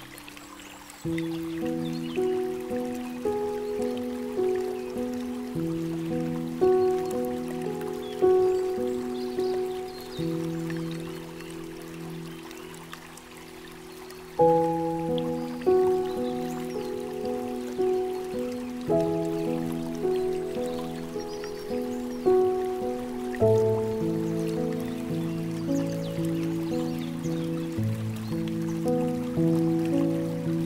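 Slow, gentle solo piano music, single notes and soft chords that ring out and fade, over a faint steady trickle of flowing water. The piano thins out for a moment shortly before the middle, then picks up again with a fuller phrase.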